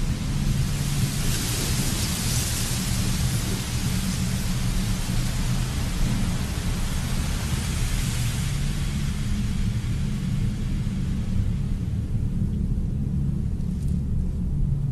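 A steady, low rumbling drone under a rushing hiss that swells over the first seconds and fades away after about eight seconds.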